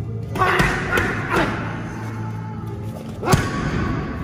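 Background music, with several thuds of punches and kicks landing on Thai pads; the loudest thud comes a little over three seconds in.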